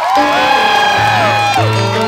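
Live band performance of a song: a singer holding long, sliding notes over keyboard and a steady bass, recorded from among the audience.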